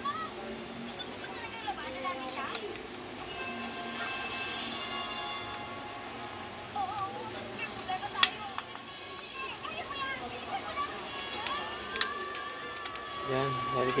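Indistinct background voices and music, with a few sharp clicks, the loudest about eight seconds in.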